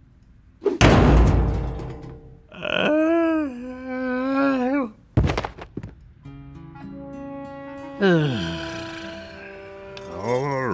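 Cartoon sound effects over music: a heavy thud about a second in, then a wavering pitched tone. A second thud comes at about five seconds, and a short run of musical notes ends in a falling slide.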